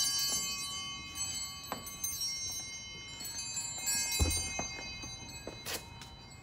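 Bells ringing with many overlapping tones that slowly die away, with a few light knocks and a dull thump about four seconds in.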